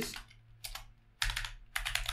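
Typing on a computer keyboard: a couple of single keystrokes, then a quick run of keystrokes in the second half.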